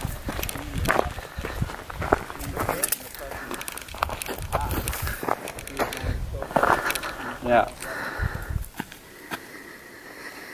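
Footsteps on a dry, rocky dirt trail, with scattered quiet voices and some low wind rumble on the microphone.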